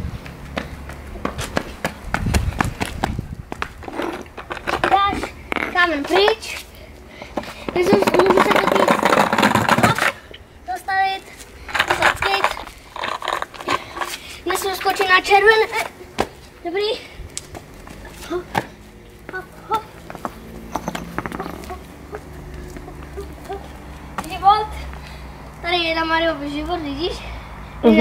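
Voices talking on and off, with scattered short knocks and clicks between them and a dense noisy stretch about eight seconds in.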